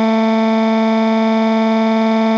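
A synthetic computer voice wailing in a cartoon cry: one long note held at a flat, unchanging pitch with a buzzy, electronic tone.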